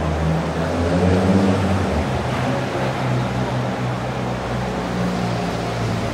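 A large vehicle engine runs steadily, its low hum shifting pitch about two seconds in, over the continuous noise of a wet city street.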